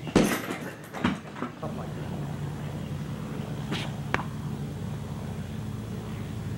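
A kick landing on a hanging heavy bag: one loud thump just after the start, then two lighter knocks within the next second and a half. After that comes a steady low hum with two faint clicks.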